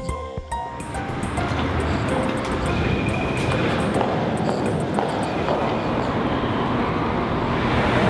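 Background music ending about a second in, giving way to the steady din of a railway station concourse under a large glass roof, with a brief high tone about three seconds in.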